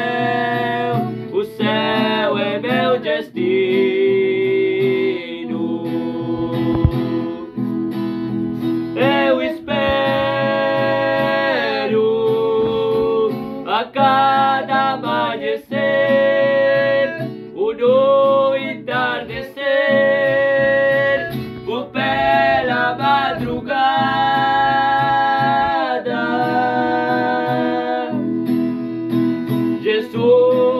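Singing of a Portuguese gospel hymn, accompanied by a strummed acoustic guitar.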